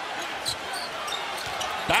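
Steady arena crowd noise from a packed basketball crowd, with a few short knocks of a basketball being dribbled on the hardwood court.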